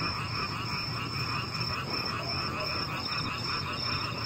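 A steady night chorus of frogs and insects, with a high trill pulsing about three times a second over a low rumble.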